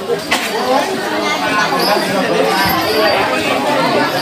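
Several people talking at once, their voices overlapping, with one sharp knock near the start.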